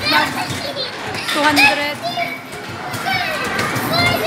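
Children's voices, high-pitched calls and chatter overlapping throughout, the hubbub of kids at play.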